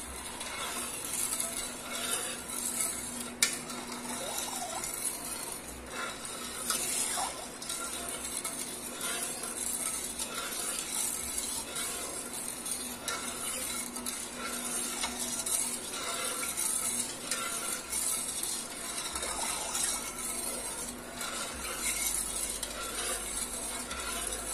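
A metal spoon stirring wine and sugar in an aluminium pot, scraping and clinking against the pot as the sugar dissolves in the heating wine. The stirring is steady, with scattered small clinks.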